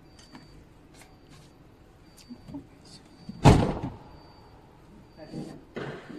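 A car door on the small electric vehicle shutting with a single loud thump about three and a half seconds in. It is preceded by faint clicks and a few short high beeps.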